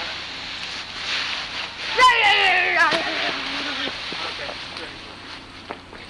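A person's long, drawn-out yell, starting suddenly about two seconds in and falling in pitch over nearly two seconds, with wind noise on the microphone throughout.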